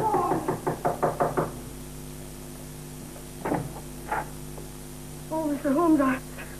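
Rapid, insistent knocking on a door, about six knocks a second, stopping about a second and a half in.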